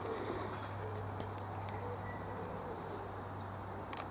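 Quiet outdoor ambience: a steady low hum with a few faint, brief chirps and ticks over a soft background hiss.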